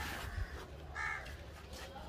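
A bird calls once, briefly, about a second in, over faint background noise.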